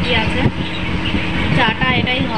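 A woman's voice talking, over a steady low hum.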